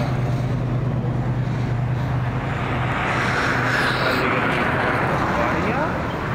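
A steady low engine hum, strongest in the first half, with a broad rushing swell of vehicle noise through the middle.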